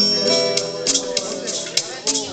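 Live acoustic duo music: acoustic guitar played under a held sung note, with short shaker-like rattles.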